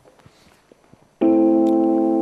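A few faint footsteps, then about a second in a keyboard chord starts suddenly and holds, slowly fading: the opening of a song's backing track.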